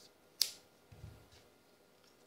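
Scissors snipping through a nylon paracord strand: one sharp snip about half a second in, then a faint click.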